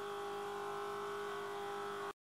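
Steady electrical hum with a light hiss and a few faint steady tones: background noise of the audio recording.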